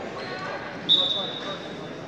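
Referee's whistle blown once, a short shrill blast about a second in, signalling the wrestlers to restart the bout. Voices chatter in the hall underneath.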